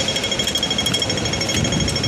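Hong Kong audible pedestrian crossing signal ticking rapidly and evenly, the fast rhythm that tells pedestrians the green man is on and it is time to cross. Street hubbub sits under it.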